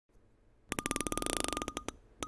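Rapid electronic ticking sound effect, a fast run of sharp clicks with a faint beep tone, starting a little under a second in and slowing to a few spaced ticks near the end, synced to a counter counting up.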